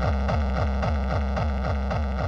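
Hardcore techno: a kick drum sweeping down in pitch about five times a second, with a noisy synth layer pulsing on each beat.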